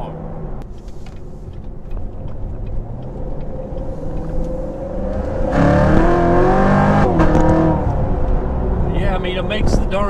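The 2016 Corvette Z06's supercharged V8, heard from inside the cabin while driving. About five seconds in it grows louder for a couple of seconds as the car accelerates, its pitch climbing, then falling back as it eases off.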